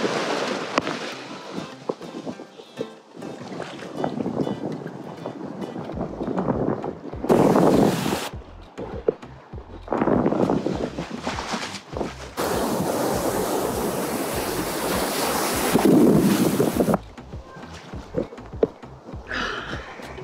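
Ocean surf breaking and washing over a phone held at water level, in several loud surges of churning water, the longest lasting about four seconds a little past the middle, with wind buffeting the microphone.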